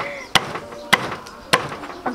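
Kitchen knife chopping corn on a wooden chopping board: three sharp chops, evenly spaced a little over half a second apart.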